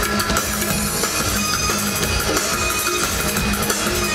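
Live electronic fusion music played loud through a concert PA, with a live drum kit over a steady electronic bed, heard from the audience.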